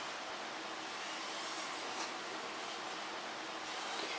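Steady, even background hiss of room tone, with one faint click about halfway through.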